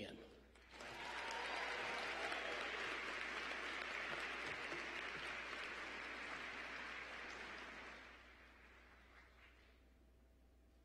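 Audience applauding in a large arena: the applause starts about a second in, holds steady, and fades away near the end.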